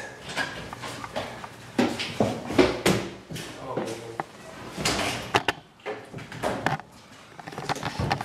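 Scattered knocks and clicks of handling and movement in a hard-walled stairwell, with a few brief snatches of voices between them.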